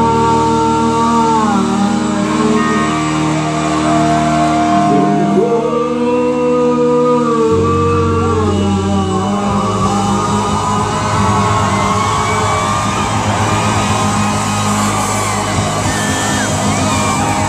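Live rock band with electric guitars, drums and a singer holding long notes. About halfway through, the held chords break up into a busier, noisier stretch with shouts and whoops over the playing.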